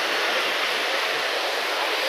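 Ocean surf breaking on a sandy beach, heard as a steady, even wash.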